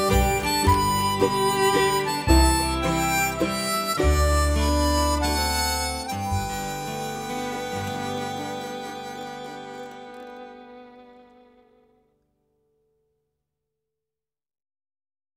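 Instrumental close of a folk song, led by harmonica over guitar and bass. It ends on a final chord that rings and fades away to nothing near the end.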